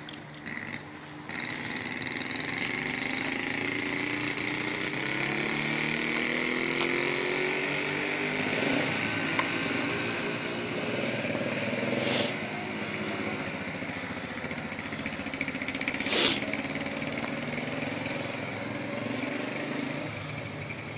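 A motor vehicle's engine running as it drives slowly along, its pitch rising and falling gently with changes in speed; it grows louder about a second in. Two brief sharp knocks stand out, one past the middle and one later.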